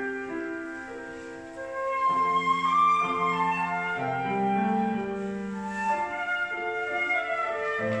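Concert flute and grand piano playing a classical duet: the flute sings long, held melodic notes over sustained piano chords. The music thins out briefly and then swells again about two seconds in.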